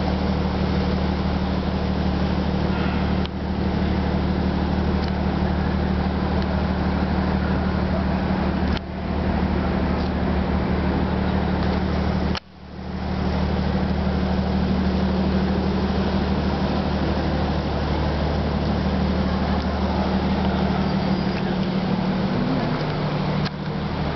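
City traffic noise: a steady low mechanical hum, like a running engine, under a constant noisy wash, dipping out briefly three times.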